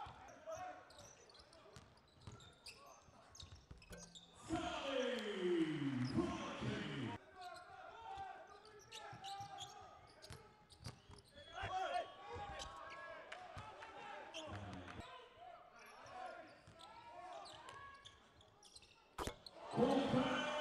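Game sound from a basketball court: a basketball bouncing on the hardwood, with scattered voices. About four and a half seconds in, a louder falling sweep lasts around two and a half seconds, and a sharp knock comes near the end.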